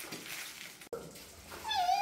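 A puppy whining in a high, wavering tone, starting about a second and a half in after a quiet stretch.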